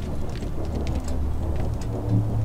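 Low, steady rumbling drone from the dramatic underscore, with a few faint ticks above it.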